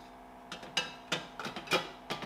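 White plastic lid being handled and fitted onto the water purifier's pitcher: a few light plastic knocks and scrapes, the loudest near the end.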